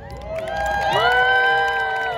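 Crowd cheering with high voices: several long 'woo' calls rise and are held together. They swell about half a second in and fade near the end.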